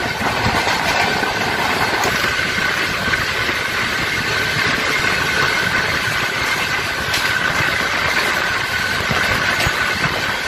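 Two passenger trains running side by side on parallel tracks, heard from an open coach doorway: a steady loud rumble and rush of wheels on rails with light clatter, and a steady high-pitched whine.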